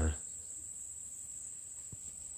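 A steady, high-pitched insect chorus, one unbroken thin tone like crickets trilling together, holding at an even level throughout.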